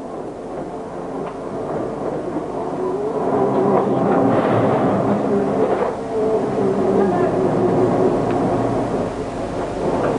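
Steady hum of a powered steel-cutting guillotine shear and its workshop, growing louder over the first few seconds and then holding, with no distinct cutting strikes.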